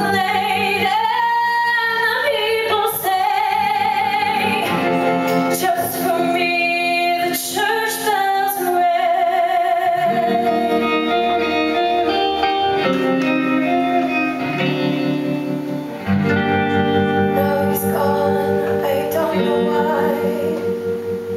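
Live band music with a female singer. A sung line bends through the first half, and the band's held notes with guitar carry on through the second half.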